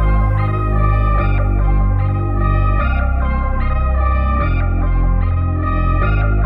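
Dark hip-hop instrumental beat in C minor at 149 bpm, with no vocals: a repeating organ-like keyboard melody over long sustained bass notes that change about every second and a half.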